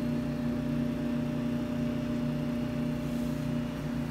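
Steady low mechanical hum made of several constant tones, the running background noise of a shop interior.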